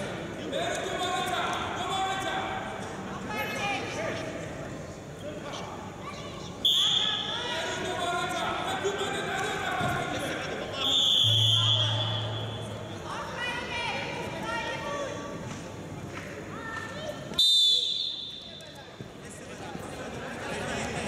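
Three short, shrill referee's whistle blasts over the murmur of voices in an indoor wrestling arena. The last one, about 17 seconds in, restarts the bout.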